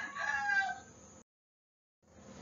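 A rooster crowing in the background, its call tailing off within the first second; the sound then cuts off suddenly to dead silence.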